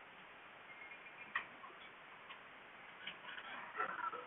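Quiet room with a few faint, short clicks, the clearest about a second and a half in and a weaker one just after two seconds.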